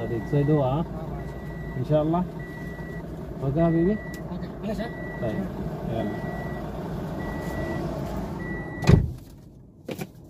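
A car's door-open warning chime beeping about once a second over the idling engine. It stops when the door is slammed shut with a sharp bang about nine seconds in.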